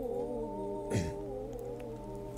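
A man's voice holding a soft, wavering tone in Quran recitation (tilawat), with a brief sharp noise about a second in.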